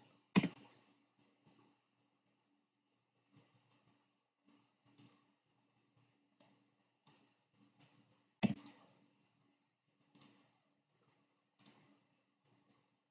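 Faint scattered clicks and taps, with two louder sharp knocks, one about half a second in and one about eight and a half seconds in, over a faint steady hum.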